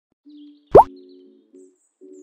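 Intro logo sting: one short, quick upward-sliding pop sound effect about three-quarters of a second in, the loudest thing here, over soft sustained music notes.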